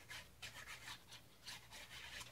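Plastic nozzle of a squeeze bottle of craft glue rubbing across cardstock as glue is run along the paper: a faint, quick series of soft scratchy strokes, about three a second.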